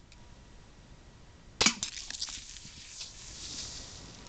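A sharp crack about one and a half seconds in as a shaken can of carbonated soda is shot and bursts. The pressurised soda then sprays out with a hiss for about two seconds, with a few small clicks and rattles.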